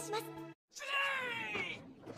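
SpongeBob SquarePants yelling in a shrill, high-pitched cartoon voice, the pitch falling slightly over about a second, cut in abruptly after a moment of total silence.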